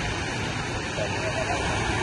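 Distant voices of people over a steady rushing outdoor noise with a fluctuating low rumble.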